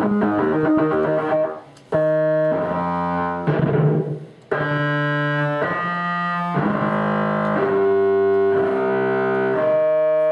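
Casio SK-8 keyboard played through an iPad's Rooms convolution reverb effect: a quick run of notes, then held chords that change every second or so, with two brief pauses between phrases.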